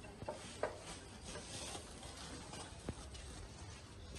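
Quiet rustling of plastic bags being lifted and carried, with a few soft clicks.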